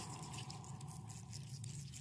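Faint low rumble with scattered soft clicks.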